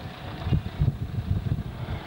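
Low, uneven rumble of wind buffeting a handheld microphone in an open field.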